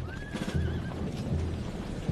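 A horse whinnying once, a call that rises and then wavers for under a second, over a steady rhythm of low thuds.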